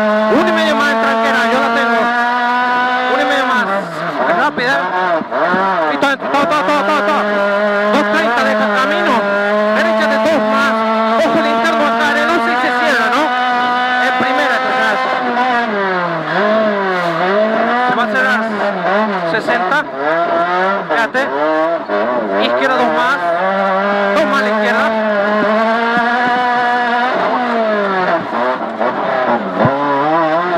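Rally car engine heard from inside the cabin while driven hard on a gravel stage. It is held at steady high revs for long stretches, and the revs drop and climb again several times as the driver lifts and changes gear for corners: about four seconds in, through a longer twisty spell in the middle, and near the end. Gravel clicks and pings against the car throughout.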